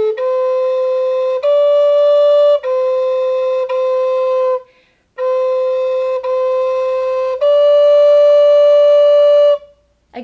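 High Spirits Sparrow Hawk Native American flute in A, made of aromatic cedar, played slowly. Seven held notes alternate between two neighbouring pitches, with a short breath a little before halfway. The last note is the longest and stops just before the end.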